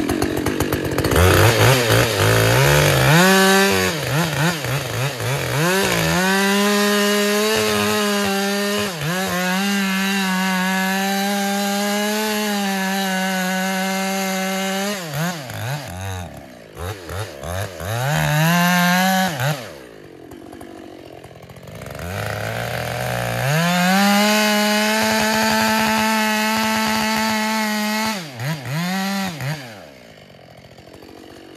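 Two-stroke chainsaw revving up to full throttle and cutting into the trunk of a poplar being felled, held at a steady high pitch through long cuts. Two-thirds of the way through it drops to idle for a few seconds, then revs up for another long cut and falls back again at the end.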